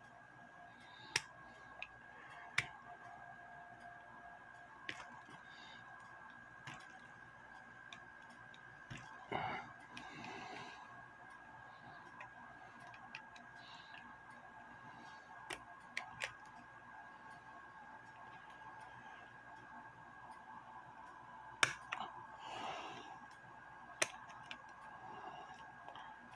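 Needle-nose pliers working the brass movement of a French clock, pulling its tapered pins: scattered sharp little metal clicks, a few seconds apart, with the loudest about three-quarters of the way through. A faint steady high whine runs underneath.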